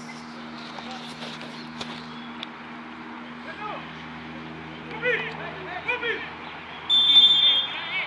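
Players' distant shouts, then a referee's whistle blast about seven seconds in, one sharp, steady, high note under a second long and the loudest sound here, letting a free kick be taken.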